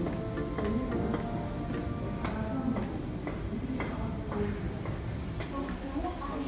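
Music with held notes, with light ticking clicks scattered through it.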